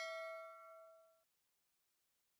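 Bell-like notification ding sound effect ringing out with several steady tones, fading and stopping a little over a second in.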